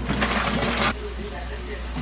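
Chicken strips frying in a steel wok: a loud burst of sizzling for about the first second as soy sauce hits the hot pan, settling to a quieter, steady sizzle over a low hum.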